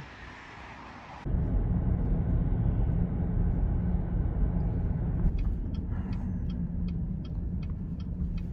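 Steady low rumble of a car driving, heard from inside the cabin, starting abruptly about a second in, with a few faint clicks partway through.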